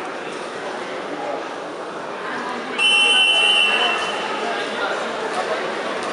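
Crowd chatter in a sports hall. About three seconds in comes a loud, shrill signal tone lasting about a second, the kind that marks a stop in a wrestling bout.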